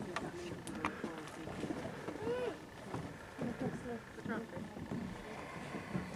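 Faint voices talking quietly, with a couple of light clicks about a second in.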